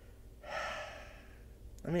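A man's single audible breath, about a second long, starting about half a second in and fading out, as he grins in a pause between words.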